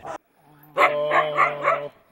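A husky sled dog's drawn-out vocal call starting about halfway in, held on one pitch for about a second and pulsing four or five times.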